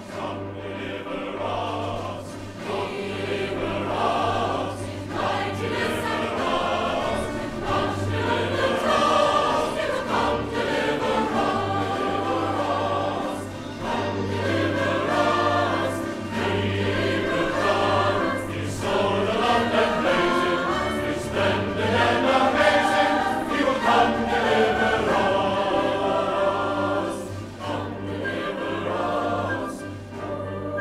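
A large choir singing with musical accompaniment, with brief dips in loudness about halfway through and near the end.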